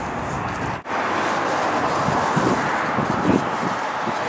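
Steady outdoor background noise with no distinct strokes, cut off briefly about a second in.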